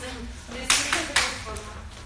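Three sharp hand claps in quick succession, starting a little under a second in.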